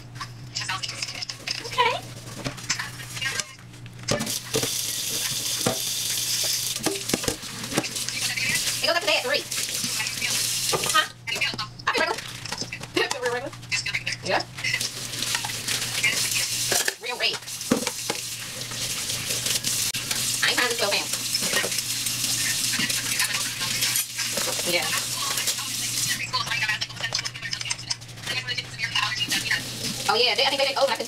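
Kitchen tap water running into a stainless steel sink while dishes are scrubbed with a dish wand and rinsed, with frequent clinks and knocks of dishes against each other and the sink.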